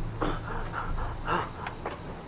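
A man panting and gasping hard for breath, four or five short, ragged gasps in a row.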